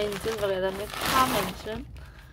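A woman's voice speaking, fading out shortly before the end.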